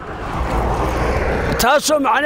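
A car passing close by, its engine and tyre noise swelling over about a second and a half. A man's voice resumes near the end.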